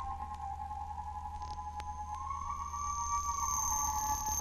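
Electroacoustic music: a pair of sustained electronic tones close together in pitch, over a low steady hum. The upper tone shifts slightly higher and brightens about halfway through. A thin high whistling tone comes in near the end, with a few faint clicks.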